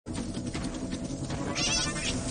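An animal calling, with a louder, higher-pitched cry in the last half second.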